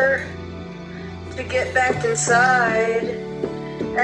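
Electronic keyboard holding sustained chords over a low bass note, with a voice singing long, wavering notes. The voice drops out for about the first second and a half, leaving the held chord alone, then comes back.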